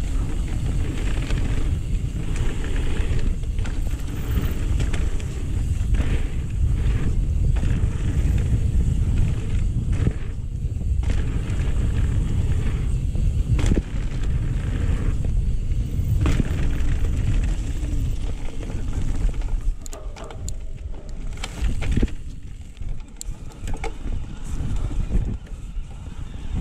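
Mountain bike ridden fast down a dirt trail and over jumps: wind buffets the microphone and the tyres rumble over the dirt, with frequent knocks and rattles from the bike over bumps. It eases off and gets quieter over the last few seconds.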